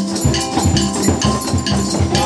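Acoustic guitar and ukulele strumming with children's djembe hand drums and maracas keeping a steady beat.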